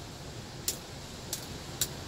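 A small knife lightly scratching and tapping the leather grip of a prop blade: a few short, faint ticks, not evenly spaced, over a low steady background hum.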